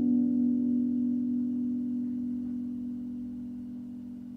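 Acoustic guitar's final strummed chord ringing out, its sustained notes slowly fading away.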